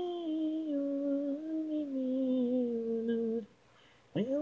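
Isolated female lead vocal, a cappella: one long held note that steps down in pitch twice and breaks off about three and a half seconds in.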